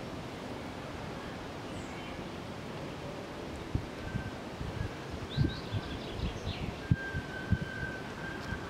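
Outdoor background hiss with wind buffeting the microphone in low thumps from about halfway through. A few faint high chirps and a faint steady high tone come in over the second half.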